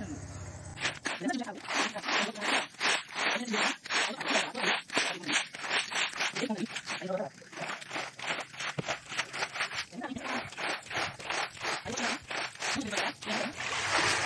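A floor squeegee pushed in quick strokes across a wet concrete roof slab, swishing and splashing through standing rainwater at about four strokes a second, with a couple of brief pauses. It is clearing the rainwater pooled on the slab.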